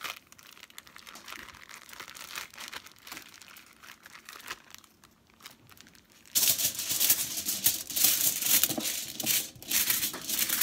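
Plastic zip-top bag crinkling as it is squeezed and handled, quiet at first and much louder from about six seconds in.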